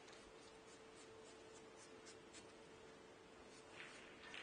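Faint quick scratching strokes, about four or five a second, of chalk being rubbed onto a pool cue tip, over a faint steady hum.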